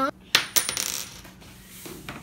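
A flipped coin dropping onto the floor: a sharp click about a third of a second in, then a short run of clatters with a brief high ring that dies away within about half a second.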